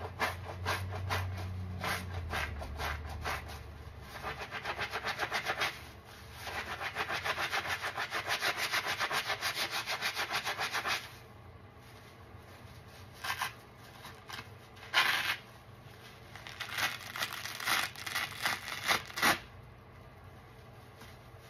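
Soapy kitchen sponge squeezed and worked over and over in thick suds, giving fast, even, wet squishing strokes for the first half. After a short lull, a few separate, louder squeezes follow.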